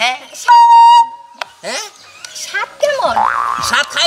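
A loud, steady electronic tone with a flat pitch, lasting about half a second, sounding about half a second in and stopping abruptly; voices follow.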